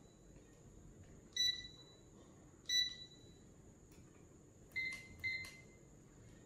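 Green-beam laser line levels giving short electronic beeps as they are switched on one by one: a single beep about a second and a half in, another near the middle, then two in quick succession near the end.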